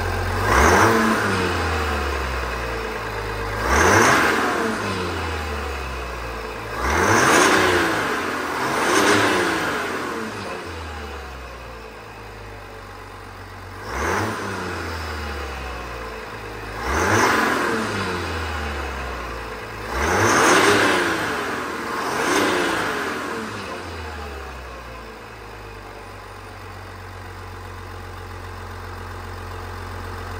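GM 3.0 L Duramax inline-six turbodiesel free-revved in eight short blips, each rising and falling in pitch with a high turbo whistle sweeping along, then settling to a steady idle for the last few seconds.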